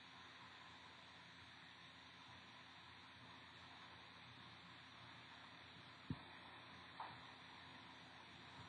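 Near silence: a steady faint hiss of room tone, broken by a soft low thump about six seconds in and a light tap about a second later.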